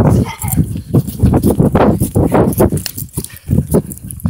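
Handling noise from a phone with its lens covered: loud scuffing and knocking against the microphone, in irregular thumps about three a second.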